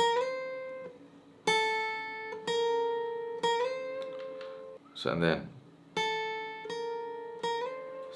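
Acoustic guitar playing a slow single-note lead melody: about six notes plucked one at a time and left to ring, several slid up a step in pitch just after the pick.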